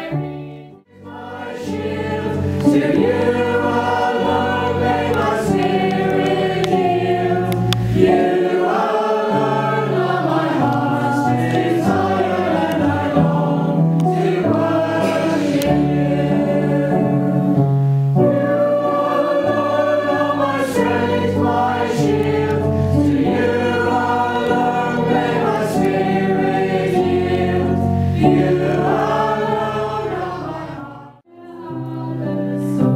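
A man and a woman singing a slow sacred song together in two voices, over held low chords from a keyboard. They begin about a second in, after a brief pause.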